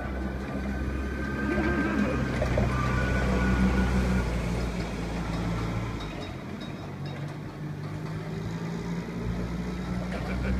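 Propane forklift engine running steadily as the forklift drives. Its note rises and falls a little as it moves.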